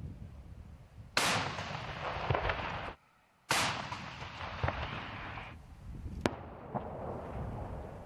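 Tank main gun firing: two heavy blasts about two seconds apart, each trailing off in a long rumble, then a sharper single crack near the six-second mark.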